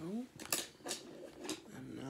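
A person's voice: a short rising vocal sound at the start, then a few sharp clicks, and near the end humming in steady held notes.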